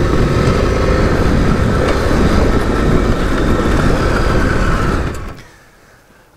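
KTM 1090 Adventure R's V-twin engine running under way on a dirt trail, heard together with riding noise from a helmet-mounted camera. The sound fades out about five seconds in.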